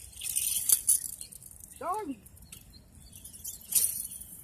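Two short bursts of hissing, rustling noise, the first ending in a sharp click, with a man's drawn-out 'ah' between them.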